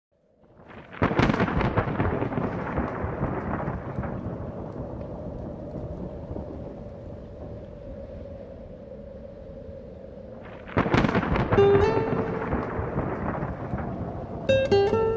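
Thunder: a loud crack about a second in that rumbles away slowly, then a second clap near the end. Plucked guitar notes come in just after the second clap.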